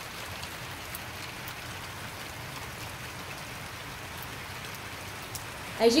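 Steady rain falling on a roof, heard from inside, with occasional separate drop ticks.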